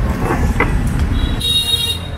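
Road traffic rumbling past on a busy street, with a short horn toot about one and a half seconds in.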